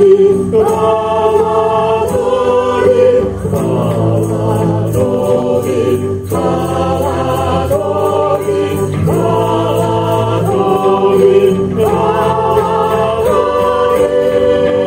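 A live Christian worship song: men's and women's voices singing long held notes together over a small band, with a steady beat.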